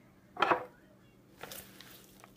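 Salad greens being packed by hand into a glass mason jar: a short rustle and knock against the glass about half a second in, and a fainter one about a second later.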